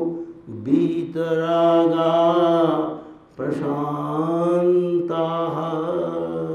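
A man chanting a Sanskrit verse, a slow melodic chant of long held notes. There is a short break for breath about half a second in and another just after three seconds.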